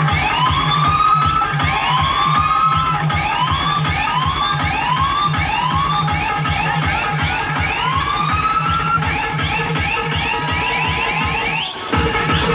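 Loud DJ dance music: a siren-like sound effect rises again and again over a fast, steady bass beat. After about nine seconds the siren sweeps come quicker and shorter.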